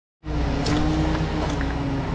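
Heavy diesel grapple saw truck's engine running steadily, with a faint steady whine over the engine's hum.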